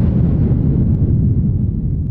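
Loud, deep rumbling explosion-style sound effect of a logo sting, cutting off abruptly near the end.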